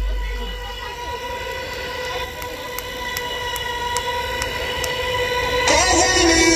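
A steady, sustained amplified drone, one held pitch with its overtones, hangs between songs of a live rock band. Faint light clicks tick at about two to three a second, and the full band comes in loudly near the end.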